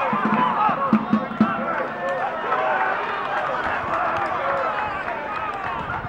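Several voices at a football match shouting over one another, players and spectators calling out, with a few sharp knocks about a second in.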